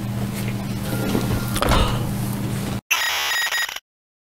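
Light handling noise over a low electrical hum. About three seconds in, a cut to an edited-in electronic buzzer sound effect, the 'error' signal, which lasts about a second and stops abruptly.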